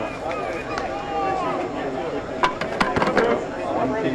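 Players' voices calling out across a softball field, with a quick run of sharp hand claps about two and a half seconds in.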